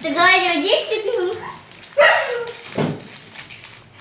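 Girls' wordless, high-pitched squealing voices: a long, wavering cry in the first second and a shorter one about two seconds in.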